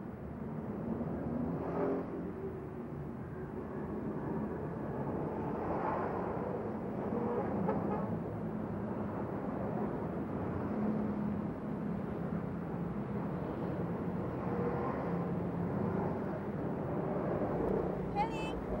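Busy road traffic: cars and trucks passing in a steady stream, the noise swelling gently every few seconds as individual vehicles go by.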